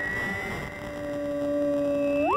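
Two layered theremin parts, each a pure, steady tone. A high note is held throughout, creeping slightly upward. A lower note drops out briefly and comes back in about halfway through, held steady to the end.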